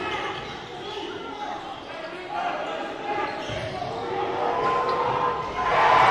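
Gym sound of a basketball game: a basketball dribbling on a hardwood court under scattered shouts from players and spectators, echoing in a large hall. Near the end the crowd noise jumps up into cheering as a shot goes up.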